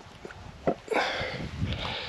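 A light click, then a sniff close to the microphone lasting about a second.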